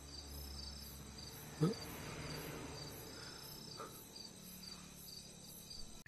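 Crickets chirping in a steady pulsing rhythm of night ambience, with a brief low sound rising in pitch about one and a half seconds in.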